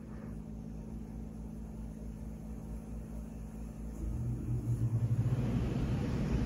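Air conditioner turning on: a steady low hum that grows louder about four seconds in, with a rushing noise joining it soon after.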